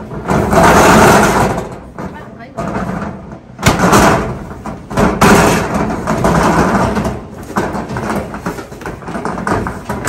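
Corrugated-metal roll-up storage unit door being unlatched and pushed up, rattling, with sharp metallic clanks near the middle.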